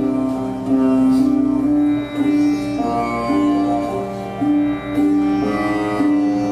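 Sitar playing a raga melody: a run of held plucked notes that change every half second to a second, some sliding into the next pitch.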